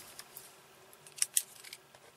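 Ballpoint pen scratching on paper in a few short strokes while writing numbers, the two loudest strokes about a second and a quarter in.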